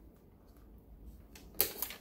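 A rocker power switch on a lapidary bench's motor controller being flipped on: a few sharp clicks about one and a half seconds in, against a quiet background.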